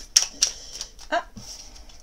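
Oracle cards being handled as a card is drawn from the deck: two sharp clicks of card against card within the first half second, then a faint papery slide.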